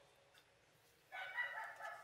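About a second in, a rooster crows faintly in the background over the call line: one long, high call.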